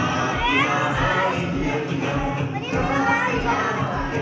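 A group of young children's voices singing and shouting along to music with a steady beat; two high rising calls stand out, one about half a second in and one a little past the middle.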